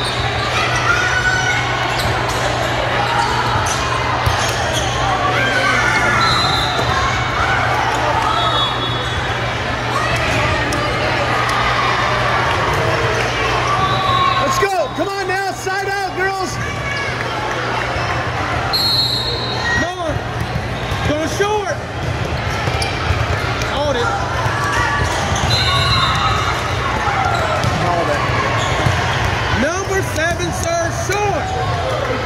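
Busy volleyball gym: a babble of players' and spectators' voices with occasional shouts, volleyballs being struck and bouncing on the court floor, over a steady low hum, all echoing in the large hall.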